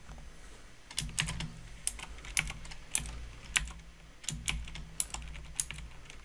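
Typing on a computer keyboard: a short run of irregular keystrokes as a single word is typed, starting about a second in.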